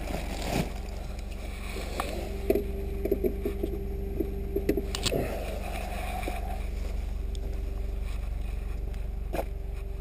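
Steady low drone of an idling vehicle engine. A quick run of light clicks and taps comes a few seconds in.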